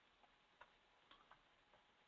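Near silence with a few faint, scattered keystrokes on a computer keyboard as a word is typed.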